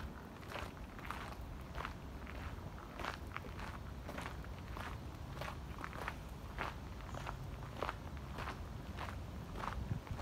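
Footsteps of a person walking at a steady pace along a garden path, a little under two steps a second, over a low steady rumble on the microphone.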